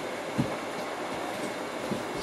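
Steady background noise of a workshop room, with two soft low thumps, about half a second in and near the end, as a pair of large clamped capacitor cans is handled.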